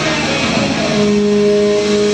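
Distorted electric guitar through a stage amp at a live rock gig, holding one sustained note that comes in about a second in, over a loud wash of band and room noise.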